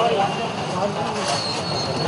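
Outdoor market ambience: a steady wash of background noise with indistinct voices, and a thin high-pitched squeal in the second half.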